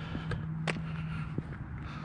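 A steady low engine hum, with a few light footsteps or scuffs clicking as someone walks along the pavement.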